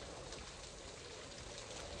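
Heavy rain falling steadily, a faint even hiss heard from inside an unfinished wood-framed house.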